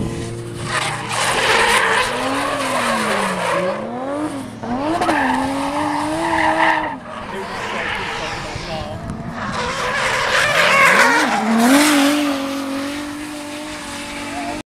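Drift car's engine revving up and down on the throttle as it slides through a corner, with its tyres squealing against the asphalt.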